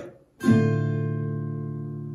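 Nylon-string classical guitar: a single upward strum about half a second in, with the little finger fretting the first string at the eighth fret on top of a fifth-fret chord shape. The chord is left to ring and fades slowly.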